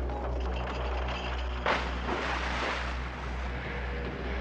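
A low steady rumbling drone, then a sudden loud burst of noise like a crash or blast about two seconds in that dies away over about a second.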